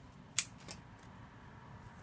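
Florist's scissors snipping through a flower stem: one sharp snip about half a second in, followed shortly by a fainter click.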